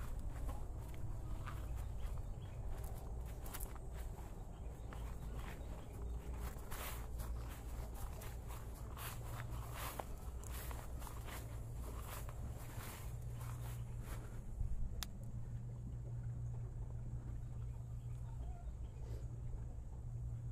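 Footsteps and scattered light knocks and clatter of someone moving about on a utility vehicle's cargo bed and handling a plastic water tote, mostly in the first three quarters, over a steady low hum.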